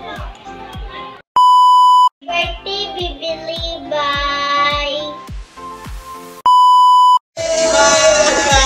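Two loud, steady electronic beeps, each lasting under a second, come about a second and a half in and again about six and a half seconds in. Between them, background music with a steady beat plays under a child's voice.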